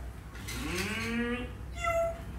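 A voice drawing out one spoken word: it rises and is then held for about a second. Near the end comes a brief, high-pitched child's voice.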